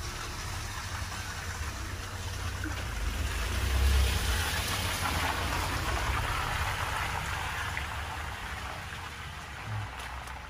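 A small van drives past on a wet, slushy road. Its tyre hiss and engine rumble swell to a peak about four seconds in, then fade as it moves off up the lane.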